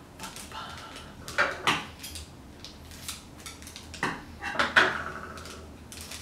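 Small packaging being handled and torn open by hand while a mystery-box collector pin is unwrapped: irregular crackles and clicks, a few of them sharper, about one and a half seconds in and again near five seconds.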